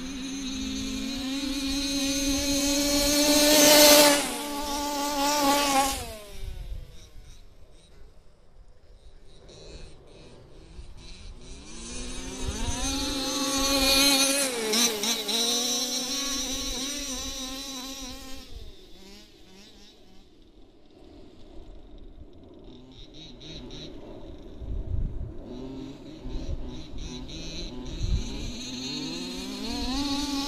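Small two-stroke petrol engines of 1/5-scale four-wheel-drive RC cars running hard on grass, a high-pitched buzz that swells as the cars pass close, loudest about 4 seconds in and again around 14 seconds, with the pitch falling as they go by. Between passes they fade to a thinner distant buzz, then build again near the end.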